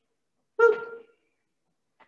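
A woman's short exclamation, "woo", about half a second in, with silence on either side.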